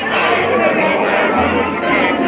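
Several voices talking over one another in a dense babble, with faint music underneath.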